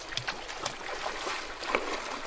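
Feet splashing through a shallow river as a person wades in, with uneven sloshing splashes over the steady rush of the stream.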